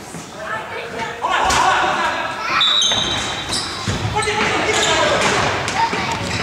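Indoor hockey play in an echoing sports hall: players calling out, sharp knocks of sticks and ball on the wooden floor, and a short high whistle tone about three seconds in.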